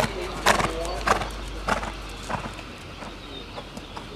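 Hoofbeats of a horse cantering on dirt arena footing, a dull thud at each stride, roughly every 0.6 s, growing fainter after the first couple of seconds.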